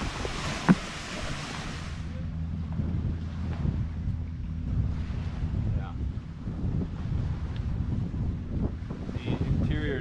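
Wind buffeting the microphone outdoors, with a low steady hum underneath and a single sharp knock about a second in.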